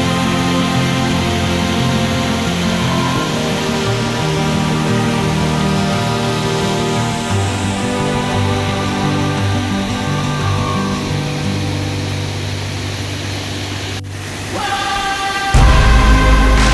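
Background music of slow, held notes over the steady rush of a waterfall. Near the end the music breaks off and a louder track with heavy bass comes in.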